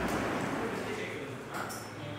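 Faint voices over room tone, with a brief high-pitched chirp about one and a half seconds in.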